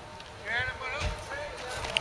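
Footsteps through dry field stubble, with a few quiet, unclear words from a voice starting about half a second in.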